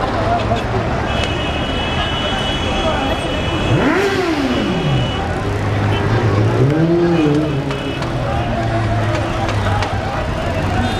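A motor vehicle engine revs up and falls back about four seconds in, and again around seven seconds. Street noise and voices run underneath.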